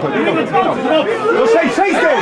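Several voices shouting and calling over one another at a football pitch, players' and spectators' calls overlapping during an attack.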